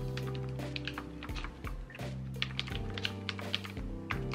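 Typing on a computer keyboard: a quick, irregular run of key clicks. Background music with sustained chords plays underneath.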